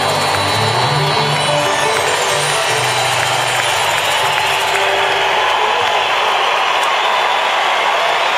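Live band's amplified music through the arena PA, heard at full loudness over a steady wash of crowd noise. The low notes die away about six seconds in, leaving the crowd.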